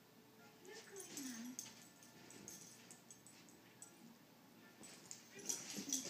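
A dog's brief pitched vocal sound, falling then rising, about a second in, as it plays with a cat. Near the end comes a flurry of quick scuffling taps as the dog lunges at the cat.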